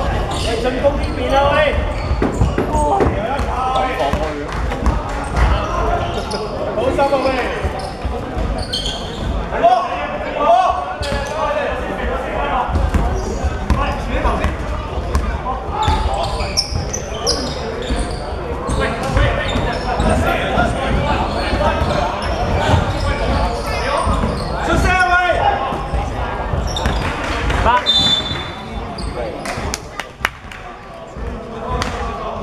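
Basketball game play: a basketball bouncing on a hardwood court amid players' calls and footsteps in a large sports hall. A short high whistle sounds near the end.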